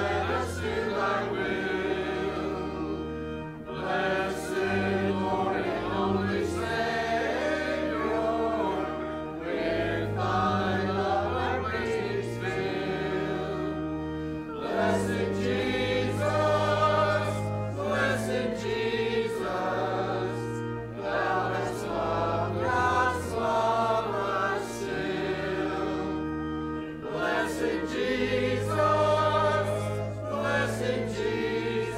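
Mixed church choir of men and women singing with organ accompaniment, the organ holding low sustained notes beneath the voices, with brief pauses between phrases.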